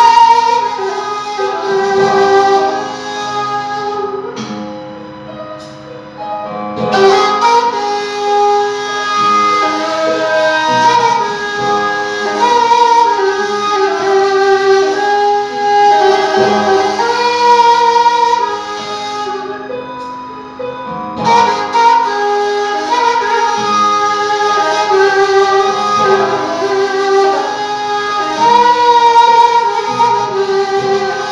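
Persian ney, the end-blown reed flute, playing a slow melodic line in the Bayat-e Esfahan mode (its daramad). Long held notes slide between pitches, with two brief softer lulls.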